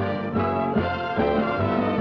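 A studio orchestra playing the show's closing theme, brass to the fore over a steady bass beat.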